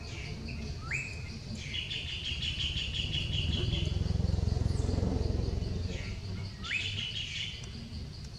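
A songbird calling twice, about six seconds apart: each phrase is a short rising whistle followed by a rapid trill. Under it runs a steady, fast-pulsing insect buzz and a low background rumble.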